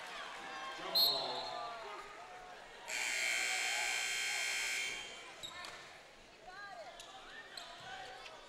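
Gym horn at the scorer's table sounding one steady blast of about two seconds, the signal for a substitution, over crowd voices echoing in the hall. A brief sharp sound, the loudest moment, comes about a second in.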